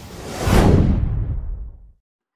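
A logo-intro whoosh sound effect: a deep rushing noise swells up about half a second in, then fades and grows duller until it dies out just before the end.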